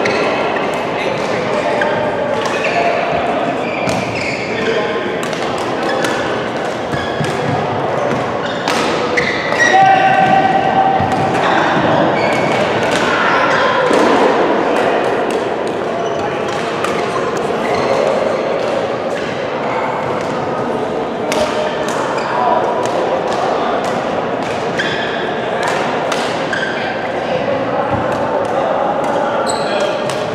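Badminton rackets striking a shuttlecock in a rally, as sharp irregular clicks in a reverberant sports hall, with voices talking in the background.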